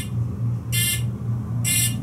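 Elevator car's fire-service buzzer sounding short, high-pitched buzzing beeps about once a second, twice here. The car has been recalled to the lobby in fire service and is holding there with its doors shut.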